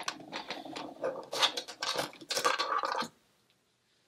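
Wig hair rustling and scratching as a section is handled and split with the hands, with several sharper scrapes. It stops about three seconds in.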